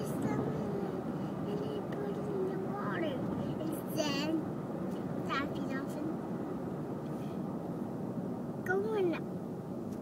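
A young child's voice in wordless, sing-song vocalizing, with high squeaky sounds about four seconds in and again shortly after, over the steady road noise of a car cabin.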